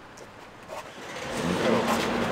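A car driving by on the street, quiet at first, then growing louder from about a second in and running on with a steady low engine tone.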